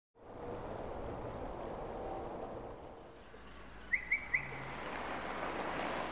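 Quiet outdoor ambience with a low steady rumble, and a bird chirping three quick times about four seconds in.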